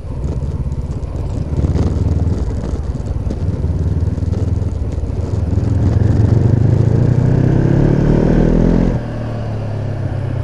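Honda CB500X's parallel-twin engine, fitted with an aftermarket Staintune exhaust, pulling away under throttle. Its revs climb steadily over several seconds, then drop suddenly near the end.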